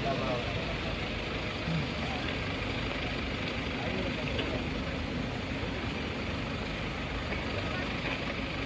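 Steady background noise with faint voices in it.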